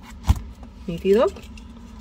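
One sharp click from a pair of jewelry wire cutters, about a third of a second in.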